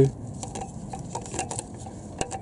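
Catalytic converter with a perforated metal heat shield being handled and lifted into place under a car: scattered light metal clicks and rustling.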